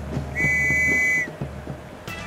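Referee's whistle blown once to signal kick-off: a single steady high note lasting just under a second.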